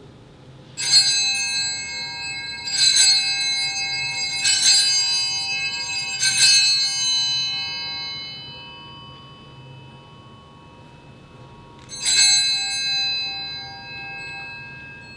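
Altar (sanctus) bell rung at the elevation of the consecrated host: four rings about two seconds apart, each left to fade, then one more ring after a pause near the end.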